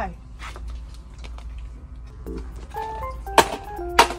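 A simple plinking music melody comes in about halfway through. About three-quarters of the way in there is a sharp, loud knock, as a small toy box is tossed into a plastic shopping cart.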